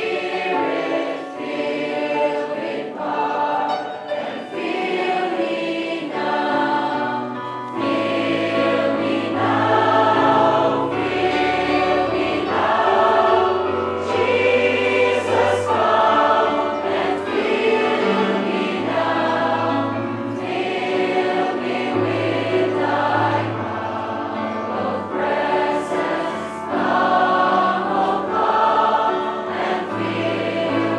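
A congregation singing a Christian worship song together, many voices at once, over a low bass accompaniment that moves in steps beneath the singing.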